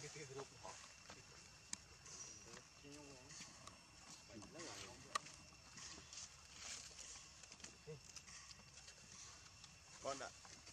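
Near silence, with faint, distant human voices now and then and a few small clicks.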